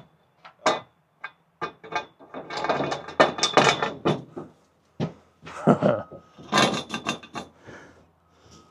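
Metal clanking and rattling of scaffold gear being handled: a few single knocks, then bursts of clattering about two and a half seconds in, around five and a half seconds, and near the end.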